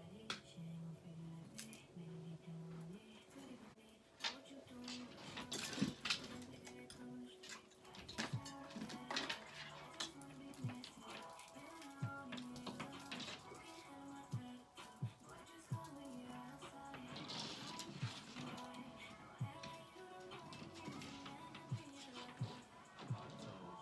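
Faint background music with a melody of held, stepping notes, with scattered light clicks and knocks throughout.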